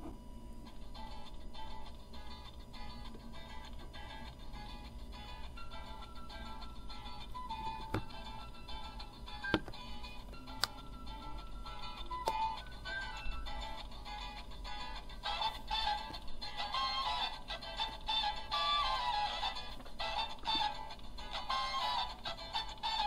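Recorded music from an MP3 decoder board, played through a small home-built PAM8403 class-D amplifier and speaker, not hi-fi. The music is sparse at first and grows fuller and louder about two-thirds of the way in. A few sharp clicks come in the middle as the board's buttons are pressed.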